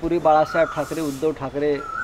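A man speaking Marathi in short phrases into a bank of microphones. A faint steady high tone sounds behind his voice in the middle and again near the end.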